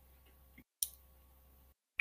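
A quiet pause broken by one short, sharp click just under a second in.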